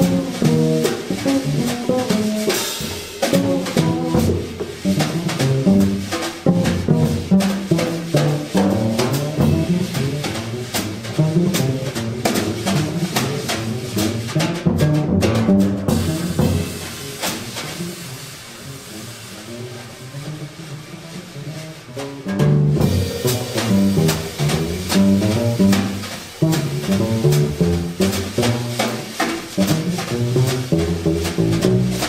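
Jazz trio of upright bass, keyboard piano and drum kit playing an uptempo tune, with moving bass lines under piano and busy cymbals and snare. Past the middle the drums fall back and the music goes softer for a few seconds, then the full trio comes back in loud.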